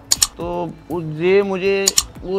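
Mouse-click sound effects from a subscribe-button animation: a quick double click just after the start and a single click near the end, with a man's drawn-out vocal sound between them.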